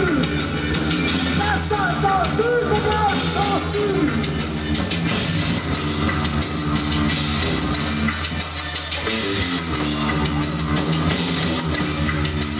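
Live band playing loud music on bass guitar and drum kit, with a steady, repeating low bass line.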